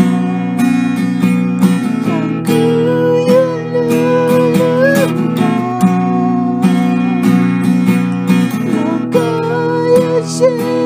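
Acoustic guitar strummed in a steady rhythm under a long-held melody line that slides and bends between notes.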